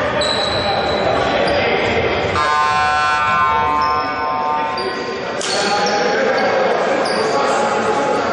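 Basketball game in a sports hall: a basketball bouncing on the wooden floor, sneakers squeaking, and players' voices echoing. A flat, buzzer-like electronic tone sounds a little over two seconds in and lasts about a second.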